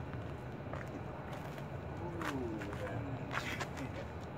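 A few sharp slaps of arms and hands meeting in a martial-arts partner drill, over a low steady rumble of distant traffic. A low, wavering bird call comes around the middle.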